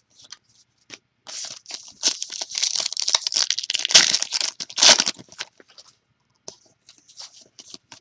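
Trading-card pack wrapper being torn open and crinkled by hand, loudest about four and five seconds in, then a few light clicks as the cards are handled.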